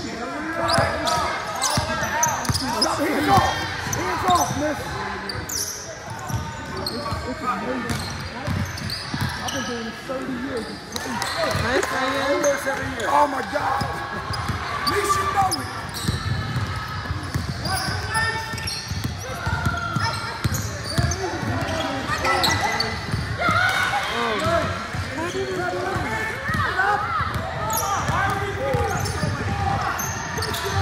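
Basketball being dribbled on a hardwood gym floor, repeated bounces during live play, with players' voices calling out across a large gym.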